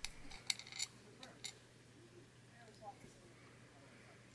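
Faint small clicks of a tiny screw and nut being handled and fitted on a thin circuit board, about five in the first second and a half, then only a few soft handling sounds over a faint low hum.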